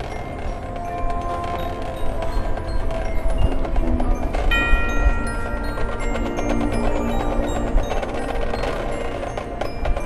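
Marching band music led by mallet percussion and chimes, with sharp percussion clicks throughout; a group of high held tones comes in about four and a half seconds in.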